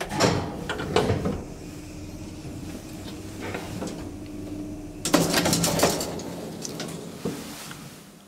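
Old HVILAN elevator: a car button is pressed with a couple of clicks, the car runs with a steady motor hum, then a little after five seconds in the metal scissor gate is pulled open with a clattering rattle, as a safety test of the gate contact.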